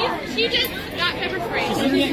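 Voices of people talking close by, with overlapping chatter.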